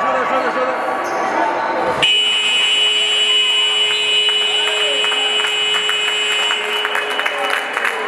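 Sports-hall scoreboard buzzer sounding one long steady electronic tone that starts about two seconds in and lasts about five seconds, signalling the end of the period, over crowd voices.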